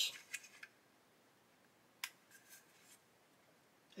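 Faint handling sounds of small plastic model-kit parts: a brief scratchy rub at the start, then one sharp plastic click about two seconds in with a little scraping after it, as a trimmed plastic door is pressed into its opening.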